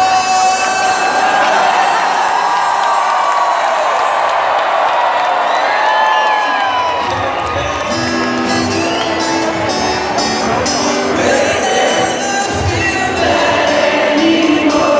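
A large concert crowd cheering and whooping. About halfway through, an acoustic guitar starts playing under the cheering.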